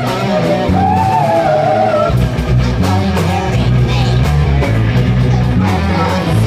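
Live rock band playing through a PA: electric guitars, bass and drums, with a long, wavering held note about a second in.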